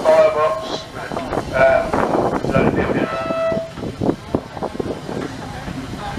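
Steam roller's whistle blown in a few short toots during the first four seconds, then a few sharp knocks.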